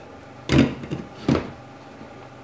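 Wooden spatula knocking and scraping against a steel frying pan while stirring pork and mushrooms: two short strokes, about half a second in and again just past the middle.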